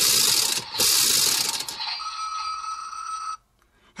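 Spin mechanism of a Shinkenmaru toy sword whirring in two loud bursts as the loaded Samurai Haoh disk is spun. About two seconds in, a steady electronic tone sounds for over a second and then cuts off abruptly.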